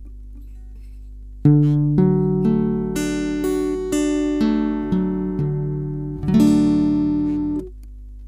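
Acoustic guitar with a capo on the second fret, fingerpicking a C-shape chord one note at a time, about two notes a second, starting about a second and a half in. About six seconds in the chord is strummed fuller, and it is damped and stops shortly before the end, leaving a low steady hum.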